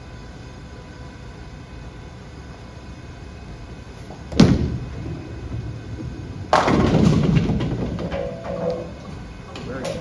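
Storm Absolute bowling ball delivered onto the lane with a sharp thud about four and a half seconds in, rolling down the lane. About two seconds later comes the crash of the ball striking the pins, the loudest sound, dying away over a couple of seconds.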